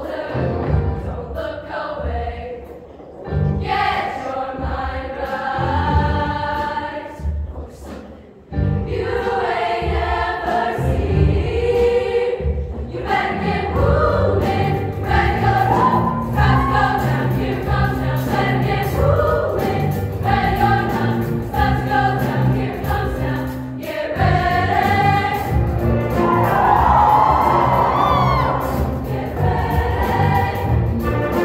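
Women's show choir singing with a live show band. The music thins out briefly about three seconds and again about eight seconds in, then comes in fuller and stays steady.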